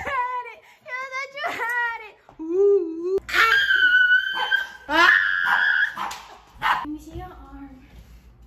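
People laughing and giggling, with a small dog barking and high-pitched cries in the middle of the stretch.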